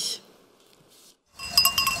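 Bells on a flock of sheep clinking and ringing, starting about one and a half seconds in.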